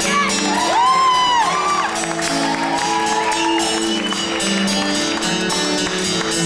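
Live acoustic duo starting a song: sustained keyboard chords with strummed acoustic guitar. A whoop from the audience rises and falls about a second in.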